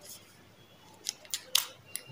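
A candy wrapper being crinkled and pulled off a lollipop by hand: a few short, sharp crackles in the second half, the loudest about one and a half seconds in.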